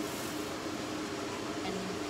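A steady mechanical hum, even and unchanging, with a constant low tone under a light hiss.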